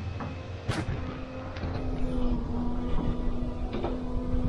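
Excavator engine running steadily with a low hum, with a few sharp knocks from the demolition work, one about a second in and one near the end.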